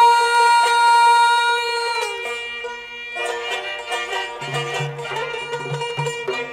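Azerbaijani mugham: a long, steady sung note ends with a short downward slide about two seconds in. Plucked and bowed string accompaniment, typically tar and kamancha, then plays an instrumental passage of quick plucked notes over held bowed tones.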